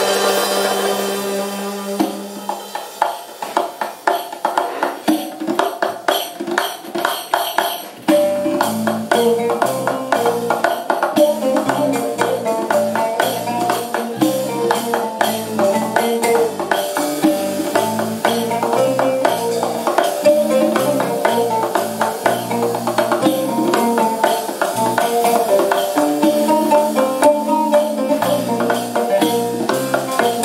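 Live Arabic-jazz ensemble music. A held chord fades, hand percussion plays nearly alone for a few seconds, then about eight seconds in the full band comes back with a moving bass line, reeds and percussion in a steady groove.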